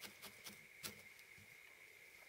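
Near silence broken by a few faint ticks of a felting needle stabbing through wool into a burlap mat, the clearest a little under a second in, over a faint steady high whine.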